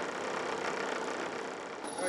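Steady, even background noise aboard a small fishing boat, with no distinct knocks or calls standing out.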